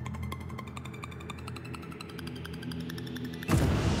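Game-show score-countdown sound effect: rapid, even ticking over a low musical drone that shifts down in steps as the score column drops. About three and a half seconds in it ends in a sudden loud burst as the score stops, with applause.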